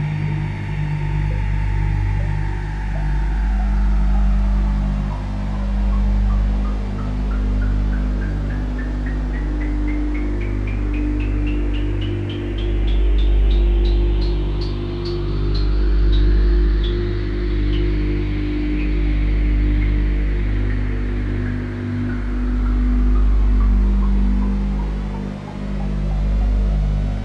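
Generative ambient music on a modular synthesizer: low sustained drones under slow tones that glide down and back up, with a rapid train of short blips that climbs in pitch through the middle and then falls away. The loudness swells and ebbs every few seconds.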